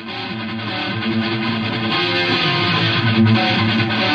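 Heavy metal song starting up, led by distorted electric guitar, growing steadily louder over these first seconds.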